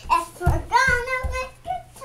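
A young child's high voice singing or chanting in a sing-song, in several short phrases with wordless or unclear sounds.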